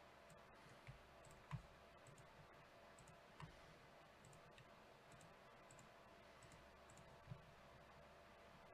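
Near silence with a few faint, sparse clicks of a computer mouse, the clearest about a second and a half in.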